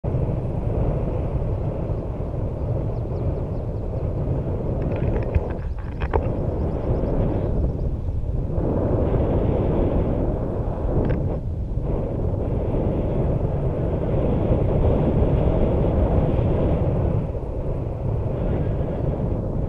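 Rushing wind from the airflow of a paraglider in flight, hitting the camera microphone as a loud, steady low rumble. A few brief clicks and short dips in the rush come partway through.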